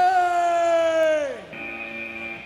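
A long, drawn-out shouted call: one held note that slides down in pitch and fades after about a second and a half. It is followed by a quieter, steady electronic tone.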